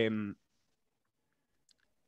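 A man's drawn-out hesitation sound "eh" that ends about a third of a second in. Then near silence, with a faint click or two near the end.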